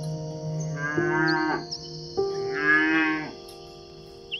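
A cow mooing twice, each moo about a second long and dropping in pitch at the end, over soft background music.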